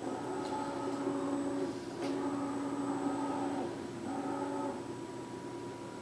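Romi C420 CNC lathe's axis servo drives whining as the slides are jogged from the control, in three moves that start and stop, with a small click as the second begins.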